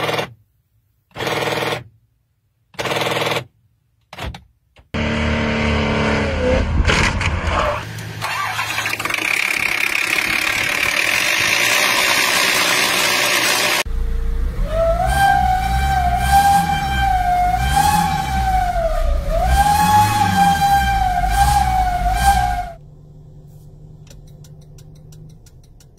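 A run of separate vehicle-fault clips: four short bursts, then an engine running with a frayed, damaged serpentine belt, then a loud, wavering high squeal lasting about eight seconds that cuts off suddenly.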